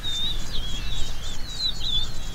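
Birds singing a fast, continuous warbling song, over a low steady background rumble.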